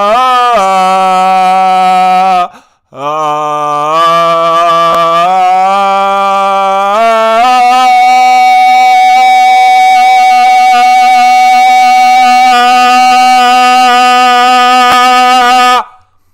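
A man's voice chanting long, held wordless notes. A short break for breath comes about two and a half seconds in, then the pitch climbs in a few steps to one long note held for about eight seconds, which stops just before the end.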